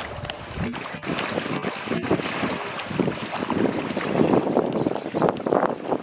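Water sloshing and splashing as a hippopotamus pushes a large floating fruit around with its snout, in uneven surges that grow louder about halfway through.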